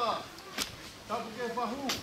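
A distant voice speaking or calling out, with two sharp cracks: one about half a second in and one near the end.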